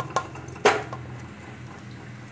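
Chopped tomatoes tipped by hand from a plate into an aluminium pressure cooker, with soft knocks and one sharp clack of the plate against the pot about two-thirds of a second in. A steady low hum runs underneath.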